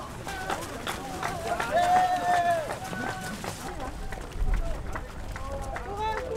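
Runners' voices calling out, with one long drawn-out call about two seconds in, over footsteps of runners on the road.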